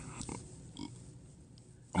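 A pause between speech, with a couple of faint, short voice sounds in the first second, then quiet room tone.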